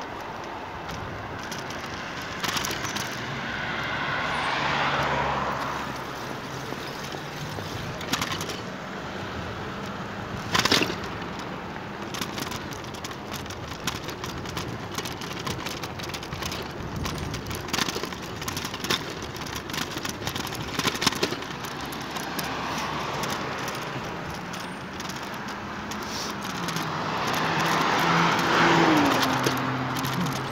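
Road traffic heard from a moving bicycle: two cars pass along the road, their tyre and engine noise swelling and fading, once a few seconds in and again near the end, over steady wind and road noise. Scattered sharp clicks and knocks throughout.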